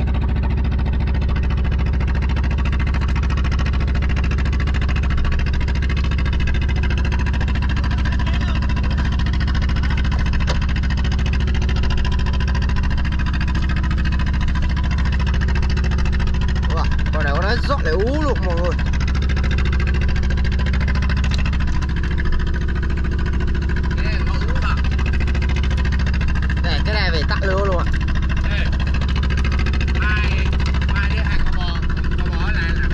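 A boat's engine running with a steady low drone.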